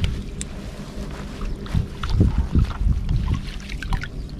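Water sloshing and swishing in irregular surges as a long-handled dip net is pushed through a shallow, weedy irrigation ditch.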